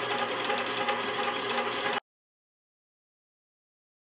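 Wire brush held against a part spinning fast in a welding turntable's chuck: a steady scratching over the turntable motor's whir, which cuts off abruptly about halfway through.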